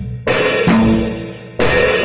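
Acoustic drum kit played: a loud strike with cymbals about a quarter second in that rings and fades, then another loud strike near the end.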